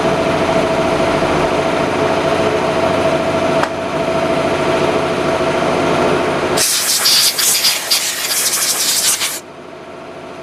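Drill press running a piloted counterbore into a metal bar, a steady machine hum with a single click partway through. About two-thirds of the way in, a loud hiss lasting about three seconds drowns the hum, then cuts off suddenly.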